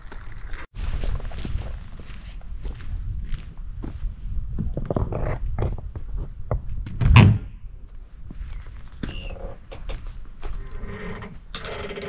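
Footsteps and trekking-pole taps on dry leaf litter, then a wooden outhouse door being opened, with a loud thunk about seven seconds in and a short creak near the end.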